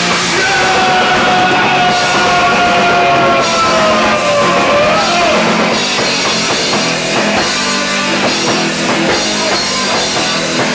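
A hardcore punk band playing live, with distorted electric guitar, bass and drums, loud and dense. In the first half a long held high note slowly sinks in pitch before the band goes on into a steady driving rhythm.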